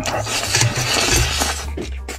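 A long, loud slurp of noodles being sucked up from the pan, followed by a few wet chewing smacks near the end.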